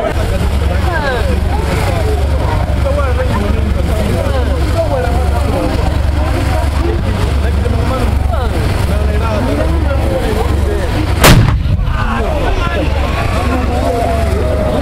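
A crowd talks over a steady low rumble, then a G6 155 mm self-propelled howitzer fires: one loud, sharp report about eleven seconds in, followed by a short echoing tail.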